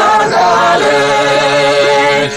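Poumai Naga folk song chanted by several voices. The higher voices glide between long held notes, while a lower voice holds a steady note underneath.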